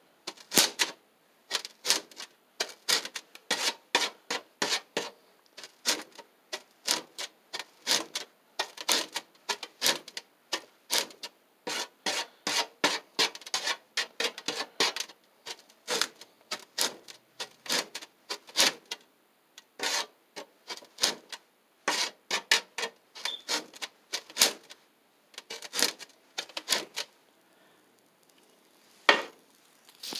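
A wooden stick scraped hard and fast across a gritty potassium permanganate and sugar mixture, short rasping strokes a few a second, striking it like a match to set it off by friction. Near the end the strokes pause for about two seconds, then one last stroke.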